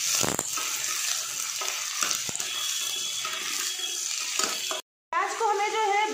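Sliced onions sizzling in hot oil in a stainless steel pressure cooker while being stirred with a spoon, with a couple of knocks of the spoon against the pot. The sizzle cuts off suddenly near the end.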